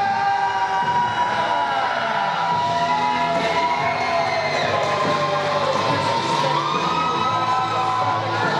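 Music played over a hall's PA system, with long held notes, beneath a crowd cheering and shouting.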